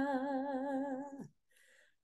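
A voice singing a hymn, holding the last note of a line with a gentle vibrato, then letting it slide down and die away a little over a second in.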